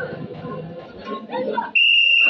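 Voices of a church choir and congregation talking, then near the end a loud, shrill, steady whistle starts suddenly and holds on one pitch.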